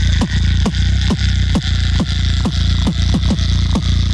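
Two-person vocal beatbox through handheld microphones: a continuous deep bass with a punchy kick about twice a second, each kick dropping in pitch.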